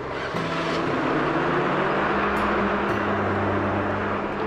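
Coach bus running, a loud rushing noise that swells just after the start and eases near the end, with soft background music.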